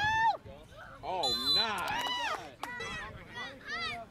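Spectators and young players shouting and cheering during play, several high-pitched calls overlapping, loudest near the start and again about a second in.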